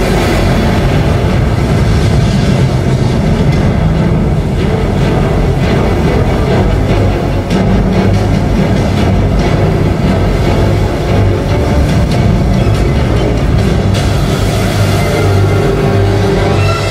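Loud show music playing over outdoor loudspeakers, dense and continuous, with a heavy low end.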